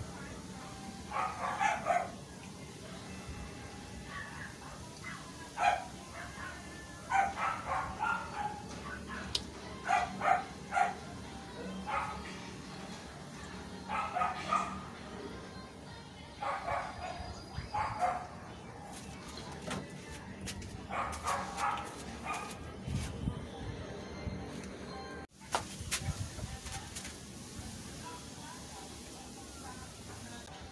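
A dog barking in short bouts of several quick barks, repeated every few seconds.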